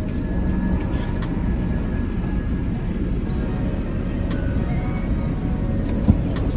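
Steady low rumble of a minivan idling, heard from inside the cabin, with faint music and a few light clicks over it.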